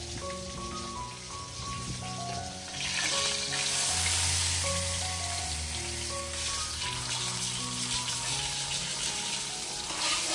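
Bangus (milkfish) steak frying in shallow oil in a metal wok: a steady sizzle that starts about three seconds in and is loudest soon after. Soft background music with gentle sustained notes plays throughout.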